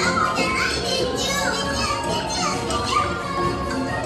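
Background music from the boat ride's soundtrack, with high-pitched voices over it.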